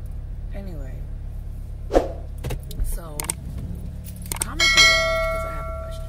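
Steady low road rumble inside a moving car's cabin. Late on, a bright bell chime rings out and fades over about a second and a half: the ding of a subscribe-button animation sound effect.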